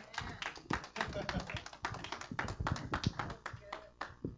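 Scattered hand claps from a small congregation, many irregular sharp claps a second, with quiet voices underneath.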